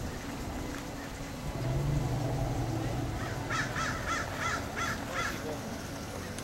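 A low steady hum for about a second and a half, then a bird calling about six times in quick succession, roughly three calls a second.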